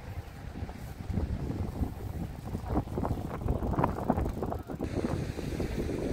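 Wind buffeting the microphone in irregular gusts, a low rumble that grows stronger after about the first second.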